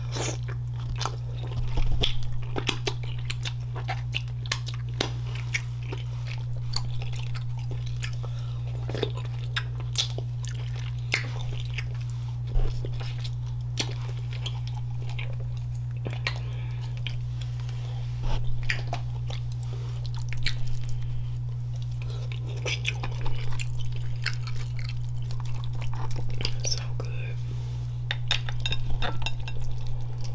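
Close-miked eating of a seafood boil: wet chewing, lip smacks and sharp crunchy clicks as king crab and shrimp are bitten and picked apart, coming irregularly with louder clusters about two seconds in and near the end. A steady low hum runs underneath.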